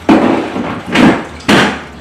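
A plastic lid being put onto a large round plastic bin and knocked shut: three loud knocks in under two seconds.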